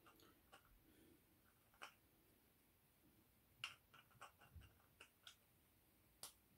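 Faint metal clicks and taps from an N52 connecting rod and its bearing cap being handled: a couple of isolated clicks, then a quick cluster of small clicks between about three and a half and five seconds in.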